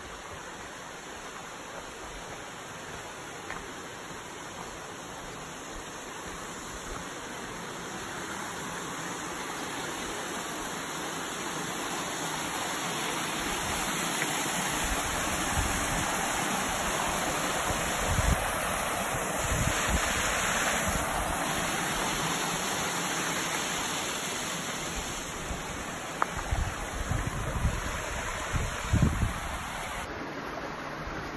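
Rushing water of a small waterfall cascading over rocks, a steady wash that grows louder to a peak about halfway through and then eases off. A few low bumps on the microphone near the end.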